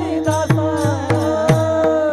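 Group of men singing a devotional chant in the Warkari bhajan style, one voice holding a long note. Small brass hand cymbals (taal) clash on a steady beat of about two to three strokes a second, with a drum's low strokes beneath.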